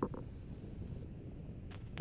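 Low, steady rumbling background noise with a brief click right at the start.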